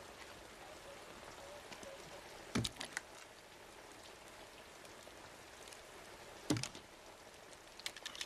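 Faint, steady hiss of rain, broken by a few sharp clicks of a pistol being handled: a quick cluster about two and a half seconds in, one about six and a half seconds in, and more just before the end.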